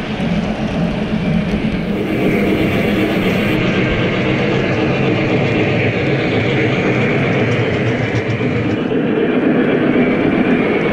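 O gauge model trains running past on the layout track: a steady rolling noise of wheels on rail mixed with motor hum as a smoking steam locomotive and the cars behind it go by.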